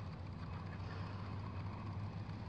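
Steady low mechanical hum with a faint, even hiss behind it.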